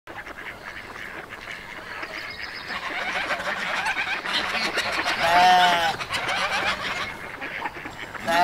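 A single loud, pitched honking call that rises and falls, about five seconds in, after a stretch of fainter high twittering.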